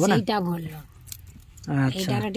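A few light clicks and clinks from hands, bangles on the wrist, pulling apart the shell of a raw sea crab, between bits of talk.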